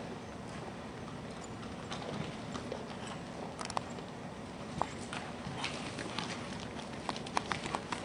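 Horse hoofbeats on an arena's dirt footing, with sharp clicks that come more often in the second half.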